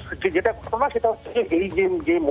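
Speech only: a man reporting in Bengali over a telephone line, the voice thin and narrow-band.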